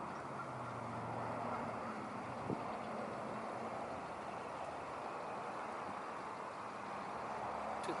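Steady outdoor background noise with a faint low hum, and one brief click about two and a half seconds in.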